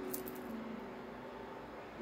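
A few faint, light clicks in the first half-second as coins hanging on a metal keyring clink together, over faint low steady tones.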